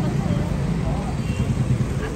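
Indistinct voices of people nearby over a steady low rumble.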